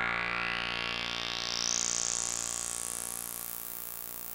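Behringer K-2 (MS-20 clone) synthesizer holding a low note while its bandpass filter is swept upward: a resonant peak rises steadily in pitch until it thins out at the top of hearing near the end, the sound slowly getting quieter.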